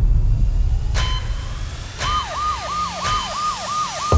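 An emergency-vehicle siren in a fast yelp, each cycle a quick falling wail, repeating about three times a second. It comes in about halfway through over a low rumble and cuts off abruptly at the end. Two sharp hits come before it.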